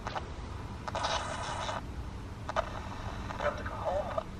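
Panasonic pocket radio used as a spirit box, sweeping the band: short bursts of static and chopped-off scraps of broadcast, with a longer rush of hiss about a second in and brief fragments of voice near the end, which the presenter reads as "we have to go home".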